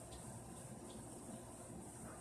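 Faint steady room tone: low hum and high hiss with no clear event, and a couple of very faint ticks.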